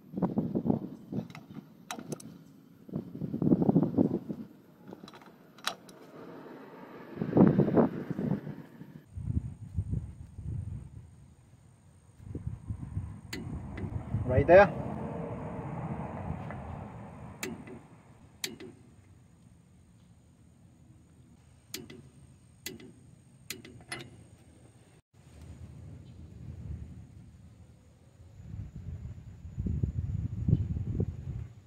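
Ford E250 front brake rotor and hub spun by hand in several bursts of a second or more, with scattered sharp metallic clicks from the torque wrench ratchet. The spindle nut is being drawn down to 29.5 ft-lb to seat the new wheel bearing.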